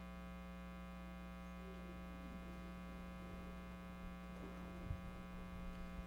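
Steady electrical mains hum over quiet room tone, with one faint knock about five seconds in.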